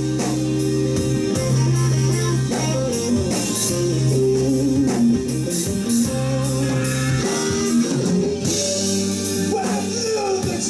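Live blues-rock band playing: electric guitar over bass guitar and a drum kit with steady cymbal strokes.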